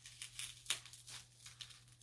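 A utility knife slitting open a shipping package: faint, irregular scraping and crackling of blade through tape and cardboard, with a sharper tick about two-thirds of a second in.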